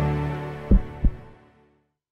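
End of a short logo jingle fading out, with two deep thuds about a third of a second apart near the middle.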